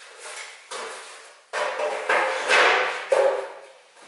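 A steel van bumper being shifted and turned on a folding metal workbench: a run of knocks and scrapes of metal, the loudest a little past halfway.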